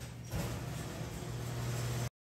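Steady low hum of shop room noise by a refrigerated topping counter, growing louder about a third of a second in.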